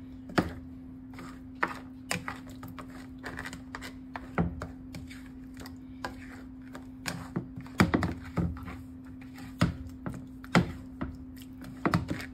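A spoon knocking and clicking against the skillet and the snow crab shells as the crab is stirred in curry sauce: irregular sharp knocks, sometimes in quick clusters, over a steady low hum.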